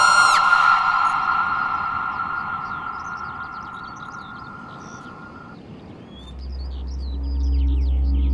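A woman's scream that rises and then holds one high note, fading away over about five seconds. Small birds chirp faintly, and about six seconds in a deep low hum of background music comes in.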